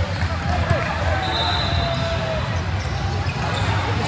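Sports-hall ambience of voices from players and spectators, with volleyballs bouncing on the hard court floor and a steady low hum of the hall.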